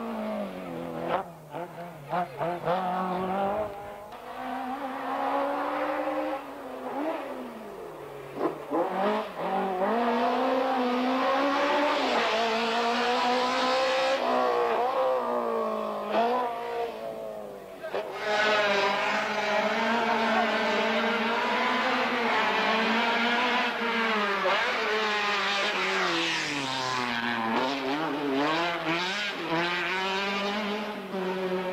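Racing car engines revving hard, the pitch climbing through the gears and falling steeply twice as the cars slow for the cone chicanes. A different car's engine takes over, louder, a little past halfway.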